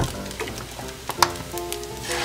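Fried rice sizzling in a nonstick frying pan while a wooden spatula pushes and stirs it aside, with a sharp click of the spatula against the pan a little over a second in.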